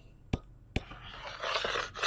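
Two short clicks, then a soft, uneven scratching of a pen stylus rubbed across a drawing tablet, erasing drawn ink.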